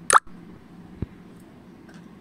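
A very short blip falling steeply in pitch right at the start, the loudest sound, then a single sharp knock about a second in as a knife is brought to a wooden cutting board to slice a steamed methi muthiya.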